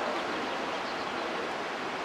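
Waterfall rushing: a steady, even hiss of falling water.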